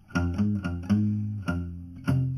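Slow blues song: a short guitar fill of about five low plucked single notes between sung lines.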